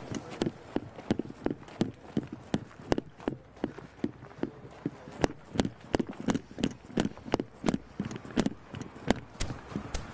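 Footsteps of people walking briskly on dry dirt ground, an even run of crunching steps at about three a second.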